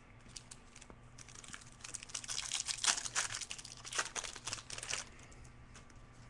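Crinkling of a trading-card pack wrapper being opened and handled: a dense run of fine crackles starting about a second in and stopping about five seconds in.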